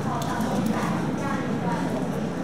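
Overlapping chatter of several people in a room, with a few light taps or knocks among it.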